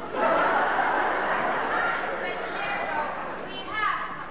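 Crowd noise from a theatre audience. It swells suddenly at the start and slowly fades, with a voice rising out of it near the end.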